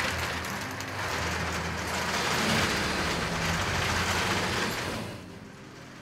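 Textile yarn-winding machinery running: threads drawn off a rack of spools with a steady whir and faint rapid rattle, fading out about five seconds in.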